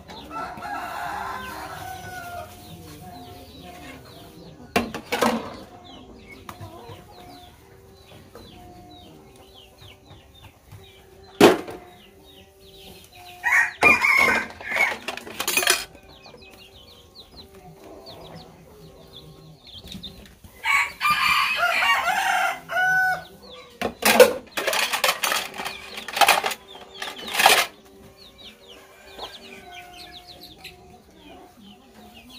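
Chickens clucking, with a rooster crowing once in a long call a little past the middle. Plates and metal trays clatter several times as they are washed by hand, and these sharp knocks are the loudest sounds.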